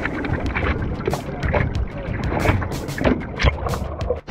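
Seawater sloshing and splashing over the nose of a surfboard, heard close up through a GoPro on the board, in a quick run of splashes with wind on the microphone.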